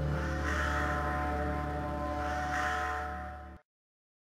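Dark ambient drone music: low sustained tones held under a hiss that swells and fades about every two seconds. It dies away and cuts off suddenly about three and a half seconds in, at the end of the recording.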